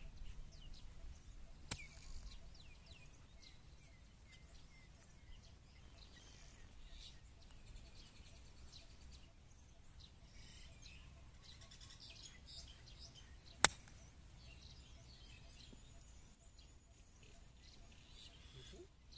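A golf club striking the ball on a short pitch from the fairway: one sharp, loud click about thirteen and a half seconds in, with a fainter click near the start. Faint birdsong chirps throughout.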